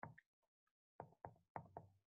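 Faint, short clicking taps of a stylus on a screen while words are handwritten: one tap at the start, then a quick run of four or five taps from about a second in.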